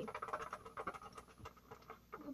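Faint scratching and a few small ticks of permanent markers drawing on plastic shrink sheets, dying away about a second and a half in.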